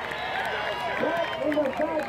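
Several men's voices calling out and cheering across an open field after a football play, growing louder about a second in, with "Good job" shouted at the very end.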